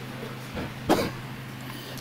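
A person coughs once, briefly, about a second in, over a low steady hum.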